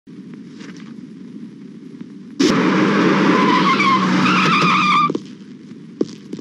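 Car tyres screeching in a skid: a loud squeal that starts suddenly about two and a half seconds in, lasts nearly three seconds and cuts off abruptly, over a faint low hum.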